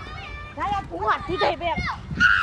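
Children shouting and calling out to each other during play: a string of short, high-pitched yells in quick succession.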